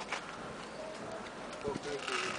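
Indistinct talk from people close by, with a couple of brief knocks and steady background noise.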